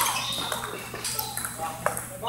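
Table tennis balls clicking off paddles and tables in a busy hall, a few scattered hits, the sharpest a little before the end, with voices chattering in the background.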